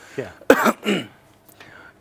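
A man coughing: a sharp cough about half a second in, with short throat sounds just before and after it.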